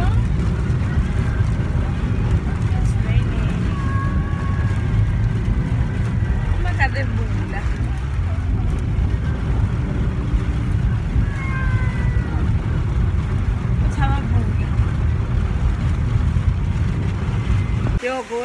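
Steady low road rumble inside a moving car's cabin, with faint voices rising over it now and then.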